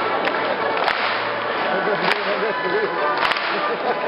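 Concert audience clapping over an orchestra playing, with several sharp single claps close to the microphone.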